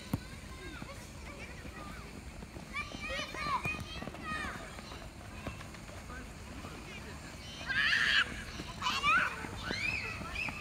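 Young children's voices shouting and calling out while they play, with the loudest shouts about eight and nine seconds in.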